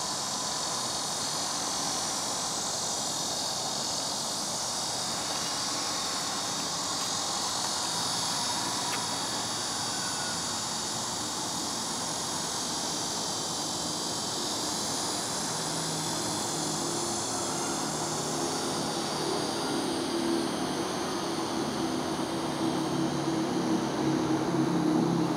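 A steady, high-pitched insect chorus fills the air. About two-thirds of the way through, a low engine drone comes in and grows louder toward the end.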